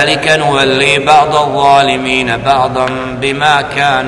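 A man reciting a verse of the Quran in Arabic, chanted melodically with long drawn-out, wavering notes in tajwid style.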